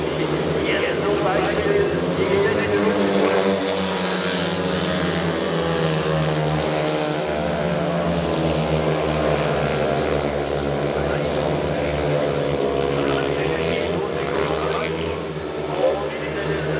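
Speedway motorcycles racing: 500cc single-cylinder methanol-fuelled engines running hard, their pitch rising and falling as the riders go through the bends and down the straights.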